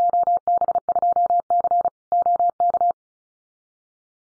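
Morse code sent at 35 words per minute as beeps of one steady pitch, short dits and longer dahs keyed in a quick run for about three seconds before stopping. It spells out a Field Day contest exchange.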